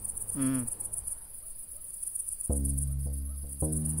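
Field crickets chirping in a steady, high, pulsing drone throughout. A brief voice sound comes about half a second in, and from about two and a half seconds in, held low music notes take over as the loudest sound.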